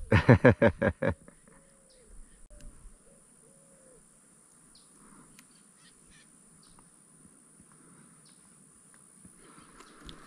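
A bird giving a loud, rapid series of harsh calls, about eight a second, for a little over a second at the start. A few faint shorter calls follow over the next couple of seconds.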